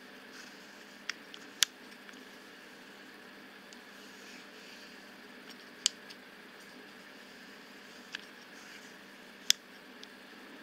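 Handling clicks from fingers working the metal focus and aperture rings of a 50 mm aus Jena camera lens: a handful of short, sharp clicks at scattered moments over a faint steady hiss.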